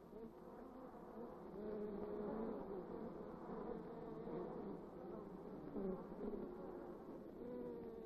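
Honey bees humming in the hive: a faint, steady drone from many bees, its pitch wavering slightly.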